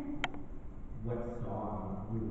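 A person's voice amplified over a hall's PA system, with a sharp click about a quarter second in.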